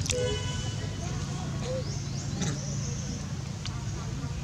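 A steady low motor hum, like an engine running nearby, with a short high-pitched call right at the start and a few faint high chirps and clicks later.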